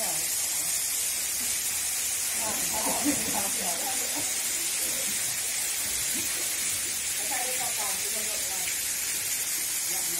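Steady rushing hiss of a waterfall's falling water, with faint voices now and then.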